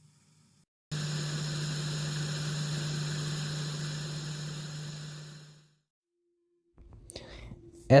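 Static-noise sound effect: a steady hiss with a low hum beneath it, starting about a second in and fading out over its last second, lasting about five seconds in all.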